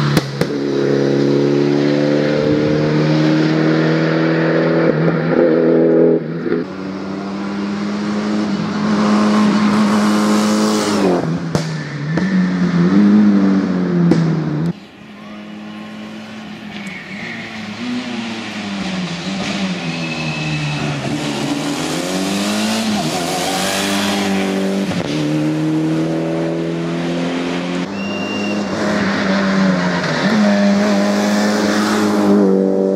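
Mitsubishi Lancer Evo's turbocharged four-cylinder engine run hard up a hillclimb, its pitch held high, then dropping and climbing again through gear changes and corners. About halfway through it suddenly goes quieter and more distant, then builds again as the car comes closer.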